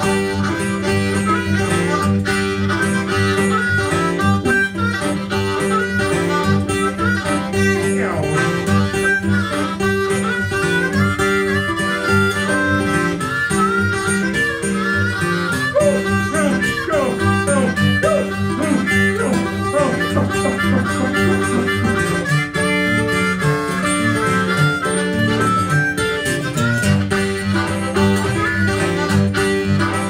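Blues harmonica solo, the harmonica cupped in the hands against a microphone, over a steady repeating guitar accompaniment, with several sliding notes.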